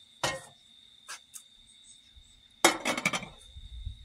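Glass beaker of solution being moved and set down on a hot plate: a clink about a quarter second in, two light ticks, then a louder cluster of glass clinks and knocks near the end. A faint steady high tone runs underneath.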